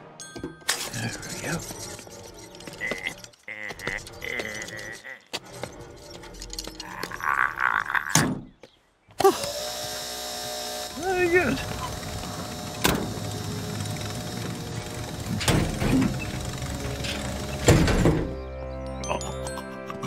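Animated-cartoon soundtrack: background music under wordless vocal noises and scattered sound effects, breaking off into a brief silence a little before halfway and then resuming.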